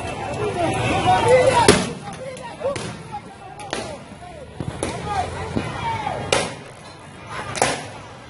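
Protesters shouting, then about five sharp bangs a second or more apart as tear gas is fired at the crowd.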